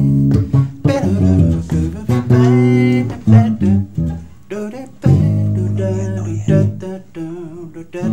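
Bass guitar played solo: a phrase of plucked notes, some held and left ringing.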